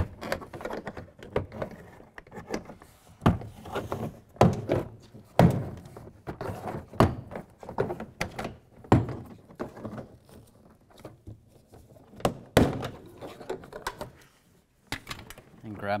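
Plastic retaining clips of a Chevrolet Silverado door trim panel popping free as the panel is pried off the door with a plastic trim tool. Sharp pops and knocks come one at a time, a second or more apart.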